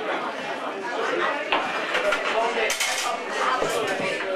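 Indistinct background chatter with a few sharp clinks of hard objects knocking together, spread through the middle and latter part.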